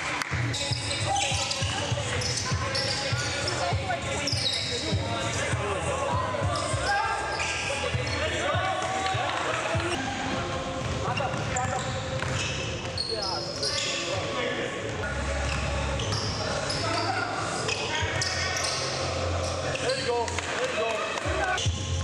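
A basketball bouncing on a hardwood gym floor during play, over voices and music with a steady bass line.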